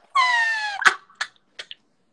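A man's high-pitched squeal of laughter: one call of under a second, falling slightly in pitch, cut off by a sharp click, with a few faint taps after.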